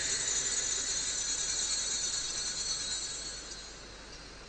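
Small altar bells ringing at the elevation during the consecration of the Mass: a bright, high, shimmering jingle that fades away a little before the end.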